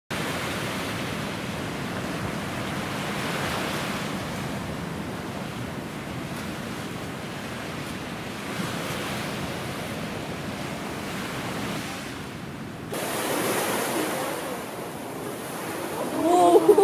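Steady rushing outdoor ambience like wind or distant surf, with no distinct events. About thirteen seconds in it changes abruptly and a high hiss is added.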